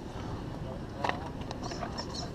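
Faint voices of people nearby over a steady low rumble of wind on the microphone, with a short sharp click about a second in.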